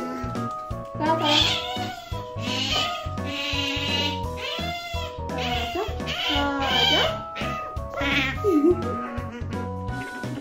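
Asian small-clawed otter begging with a string of loud high-pitched squealing calls, about one a second, over background music with a steady beat.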